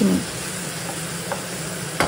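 Vegetables and freshly added tomato paste sizzling in a nonstick frying pan as they are stirred with a wooden spatula: a steady frying hiss.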